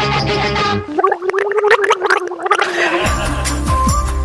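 A woman gargling into a microphone at a held pitch for about two seconds, between stretches of background music that cuts out while she gargles.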